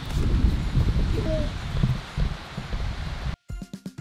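Wind buffeting the camera microphone outdoors, an irregular low rumble with hiss. It cuts off abruptly near the end, and background music begins.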